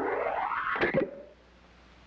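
Cartoon leap sound effect: a rising glide in pitch that ends in a short twang about a second in.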